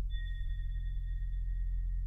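Ambient modular synthesizer music: a steady low drone, with a single high, pure tone that sounds just after the start and rings on, slowly fading.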